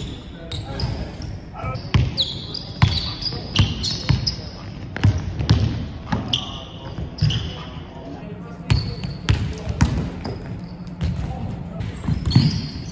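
Basketball bouncing on a hardwood gym floor during one-on-one play, with repeated sharp thuds and short high sneaker squeaks.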